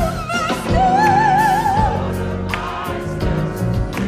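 Sacred vocal music: a solo voice with wide vibrato sings long held notes over a choir and sustained accompaniment.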